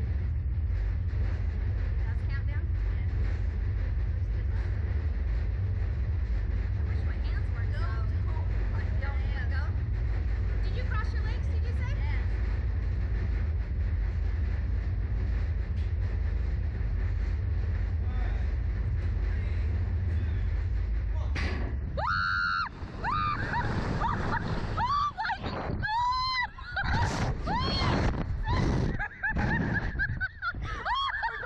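Two riders on a slingshot reverse-bungee ride screaming and laughing as they are launched, in high cries that rise and fall, starting about 21 seconds in. Before the launch there is only a steady low rumble.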